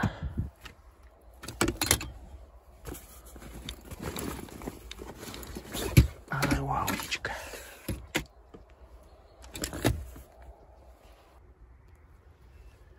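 Fishing rod and spinning reel being handled in a padded fabric rod bag: rustling of the bag with several sharp knocks and clicks, the loudest about six seconds in.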